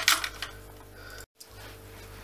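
Hard plastic parts of a stripped-down Dyson DC25 vacuum cleaner knocking and clattering as they are handled and set down, mostly in the first half-second. After that only a steady low hum, broken by a brief dropout to silence just past the middle.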